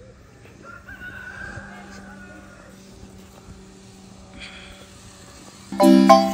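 Quiet outdoor background with a low steady hum and a faint drawn-out call about a second in. Near the end, loud music of quick, ringing struck notes cuts in.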